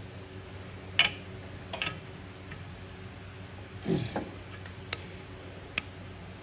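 Scattered sharp metallic clicks and knocks from a four-jaw lathe chuck being adjusted by hand as the part is dialed in with a dial indicator, over a steady low hum. The sharpest click comes about a second in, and a duller knock about four seconds in.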